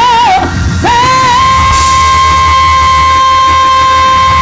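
A woman singing gospel into a microphone: about a second in she scoops up into one long, high, steady held note, over a low bass accompaniment.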